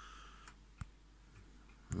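A quiet pause with a low steady hum, broken by one sharp click a little under a second in and a fainter click just before it.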